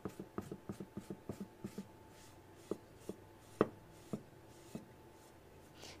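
Damp sponge rubbing over a textured clay piece, wiping underglaze back off the raised pattern so the colour stays in the recesses. Faint quick scrubbing strokes for about the first two seconds, then slower, with a few scattered soft knocks.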